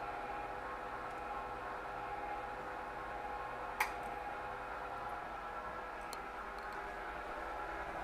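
Steady background hum of a kitchen, with one sharp clink about four seconds in as the serving spatula is set down against a ceramic plate, and a few faint ticks a little later.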